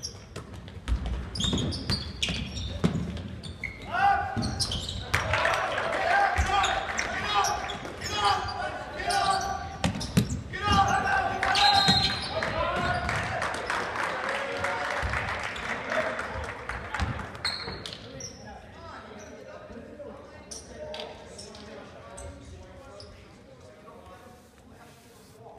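Basketball bouncing on a hardwood gym floor during play, with spectators and players shouting. The shouting swells from about four seconds in, peaks around twelve seconds, and dies away after about seventeen seconds, leaving the gym quieter near the end.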